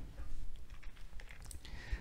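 Dry-erase marker writing on a whiteboard: a few quiet, short taps and scrapes of the tip on the board.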